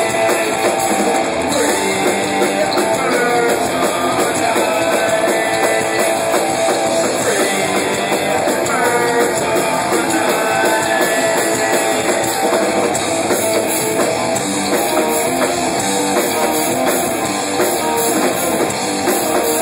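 Live rock band playing loud: electric guitar and drum kit, with a vocalist singing into a handheld microphone.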